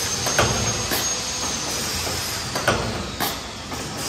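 Small paper cup forming machine running: a steady mechanical hiss with sharp knocks from its stations every half second to a second, and a faint high whine that rises over the first second and then slowly falls.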